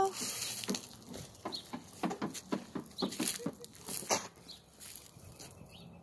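Footsteps crunching over bark mulch and dry leaves: a string of irregular crunches and clicks that thins out near the end.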